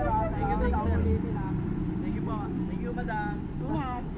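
People talking, with no clear words, over a steady low rumble of vehicle engines.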